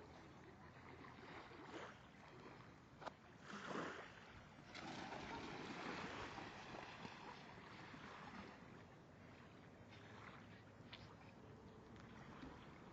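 Faint splashing of shallow water as ducks flap off the surface ahead of a swimming dog. A short louder splash comes just before four seconds in, and a longer stretch of splashing follows for a few seconds.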